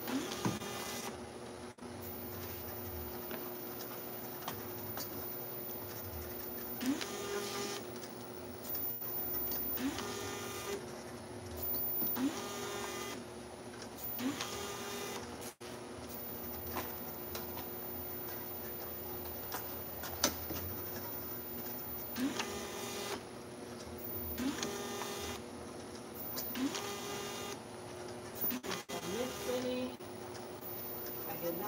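Automatic jar labeling machine running: a steady motor hum from the conveyor and turntable, broken every two to three seconds by a short whirring whine as the label head feeds out a label, with a pause of several seconds about halfway through.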